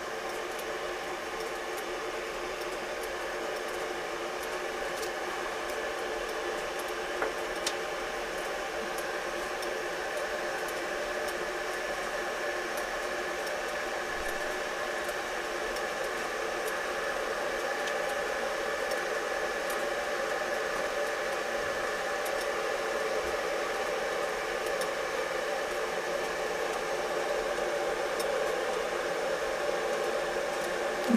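Steady hiss with a faint hum from water heating in a double boiler under a tin of melting beeswax, growing slightly louder. Two light clicks about seven seconds in.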